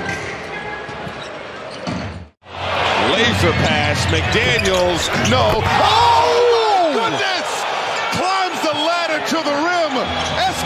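Basketball game sound: a ball dribbling on a hardwood court under arena noise. It breaks off in a moment of silence about two seconds in, then many voices of crowd and bench players cheer and shout over one another.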